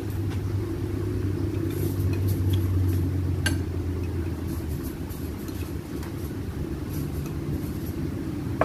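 A low, steady mechanical rumble, like an engine running nearby, loudest in the first half and easing off after about four seconds, with a few light clinks of cutlery on dishes, the clearest about three and a half seconds in.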